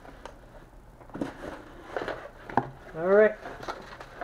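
A cardboard subscription box is opened and its contents handled on a table, with a few light knocks and papery rustles. About three seconds in, a man's short voiced 'hmm'-like sound, the loudest moment, sits over the handling noise.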